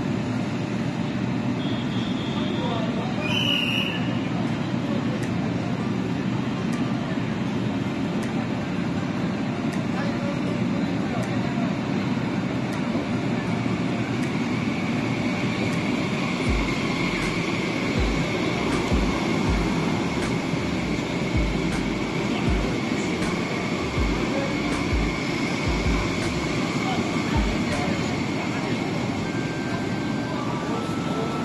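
CRH high-speed electric train pulling into the platform and rolling past at low speed. A steady high whine comes in about halfway through, and irregular low thumps come in the second half.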